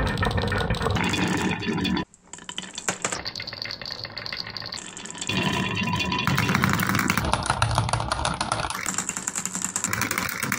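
Many marbles rolling and clattering in a continuous rattle along a wooden marble-run track and dropping into the plastic drum of a toy cement mixer truck. The sound breaks off sharply about two seconds in, then picks up again.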